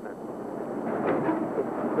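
Ship's cargo winch running on deck: a steady, rough mechanical noise that builds slightly over the first second.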